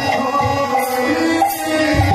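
Devotional kirtan music: a harmonium holds sustained notes that step from chord to chord, with small hand cymbals (kartals) striking and a mridang drum playing lightly underneath.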